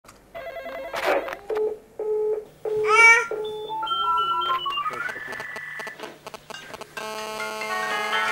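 Intro jingle of short electronic beeps and sliding tones, then a sustained musical chord about seven seconds in.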